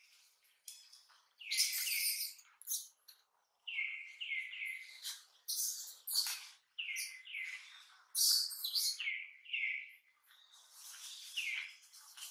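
Infant macaque crying in a tantrum: runs of short, shrill calls, each falling in pitch, broken by louder, harsher screams about every three seconds.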